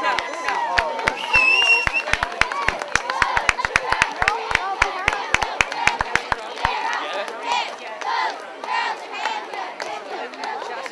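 Cheerleading squad of girls shouting a cheer over a run of quick, evenly spaced claps. The claps stop about seven seconds in, leaving shouting voices and crowd chatter.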